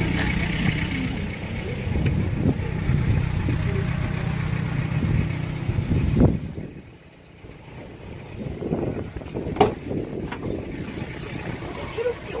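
Hyundai Starex's 2.5-litre turbo-diesel engine running steadily for about six seconds, then dropping away suddenly. Quieter handling sounds follow, with a couple of sharp clicks.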